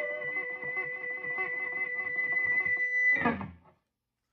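Electric guitar played through a modded Marshall JTM45-clone tube amp with its tone stack lifted (treble, middle and bass controls bypassed), still sounding full and not boxy. A quick run of picked notes plays over a held, ringing note, ending in a last strum a little after three seconds that cuts off suddenly.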